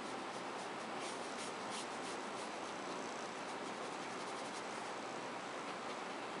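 Watercolor brush stroking over paper, a few faint scratchy strokes, mostly between one and two seconds in, over a steady room hiss.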